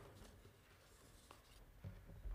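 Near silence with a few faint rustles and light clicks of paper being handled and gathered up at a wooden pulpit.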